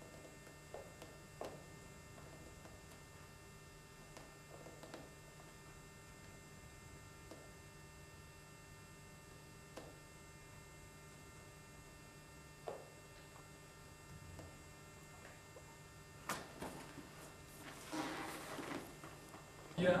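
Faint steady electrical hum with a few soft knocks. About three seconds before the end, louder rustling and shuffling as a body moves on a vinyl-covered gym mat.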